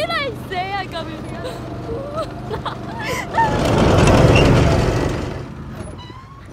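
Small go-kart engine running steadily under people's voices. Midway through, a loud rush of noise swells and fades over about two seconds.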